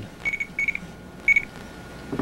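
Short electronic beeps at one high pitch, about four of them in an uneven rhythm, over a faint steady tone.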